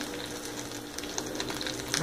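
Faint crackling sizzle from a glass dish of stuffed potatoes hot from the oven, with scattered tiny ticks over a low steady hum.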